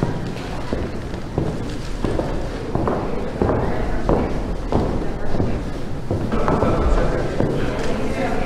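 Footsteps on a wooden gym floor, a step about every two-thirds of a second, with voices murmuring in a large, echoing hall.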